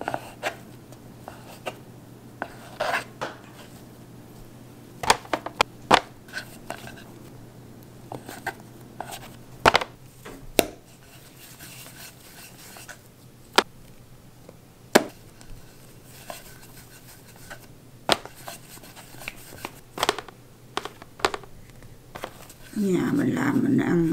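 Scattered sharp taps and knocks from a plastic dough scraper cutting bread dough against a bamboo cutting board, and from dough pieces being handled and set down. The taps come irregularly, a dozen or so loud ones.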